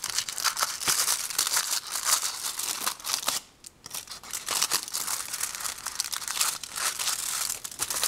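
Aluminium foil wrapper of a chocolate bar being peeled open and crinkled by hand, with dense crackling and small tearing sounds. There is a brief pause about three and a half seconds in.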